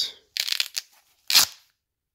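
Velcro flap of an AOKO phone pouch being ripped open: a ragged crackling tear about half a second in, then a shorter, louder rip a little later.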